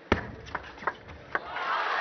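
Table tennis ball struck back and forth in a rally: four sharp clicks less than half a second apart, the first the loudest. The arena crowd's noise then swells near the end as the point finishes.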